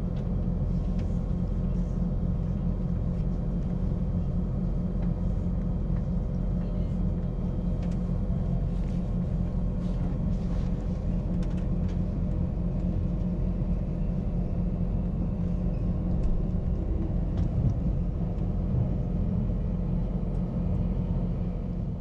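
Steady low rumble of a Queensland Tilt Train heard from inside the passenger car as it pulls away from a station, with a few faint clicks from the wheels and track.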